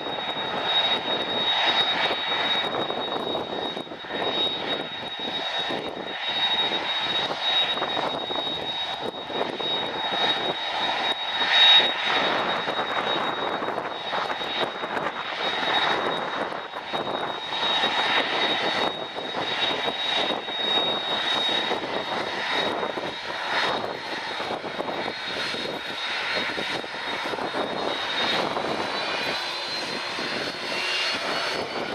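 Airbus A300-600 airliner's jet engines running at taxi power: a steady high whine over a rushing noise that swells and fades. Over the last few seconds the whine begins to climb in pitch.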